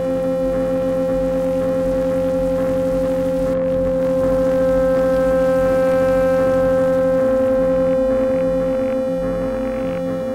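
Electronic drone of sustained synthesized oscillator tones: a loud steady mid-pitched tone over a rapidly pulsing lower tone. From about seven seconds in, a low tone starts switching on and off in a quick rhythm.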